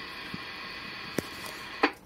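Radio receiver audio tuned to an empty stretch of the 6 m band: steady static hiss with a faint hum. A few faint clicks come through, and a short, louder click near the end is followed by the hiss dropping away.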